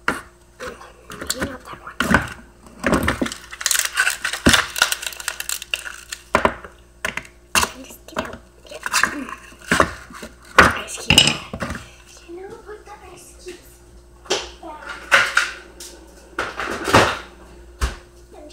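Plastic ice cube tray being worked: a string of sharp cracks, knocks and clatters as ice cubes are loosened and knocked about in the tray.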